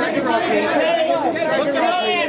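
Many voices talking and calling out at once, overlapping chatter from a press line of photographers shouting directions to the person posing.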